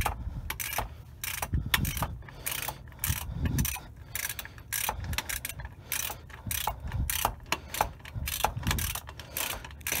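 Ratchet wrench clicking in quick irregular runs of strokes as it tightens the 15 mm oil drain plug back into the oil pan.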